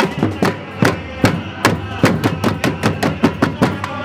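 Batucada drum band playing a fast, even rhythm of sharp stick strikes on drums.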